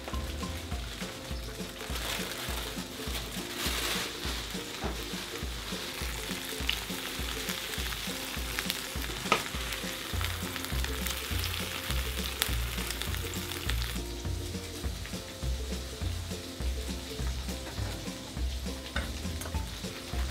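Homemade burger patties sizzling as they fry in a pan. The sizzle is strongest through the middle and drops back about two-thirds of the way in.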